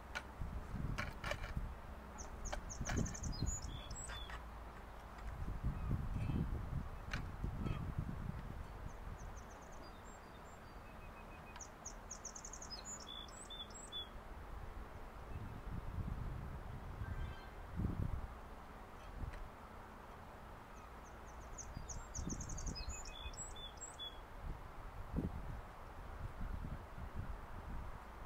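A small songbird sings the same short song three times, about ten seconds apart: each is a quick run of high repeated notes ending in a few lower notes. A low, uneven rumble runs underneath.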